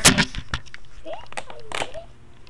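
Camera handling noise: a sharp knock at the start, then a few light clicks and a short rustle near the end. A brief snatch of a voice comes about a second in.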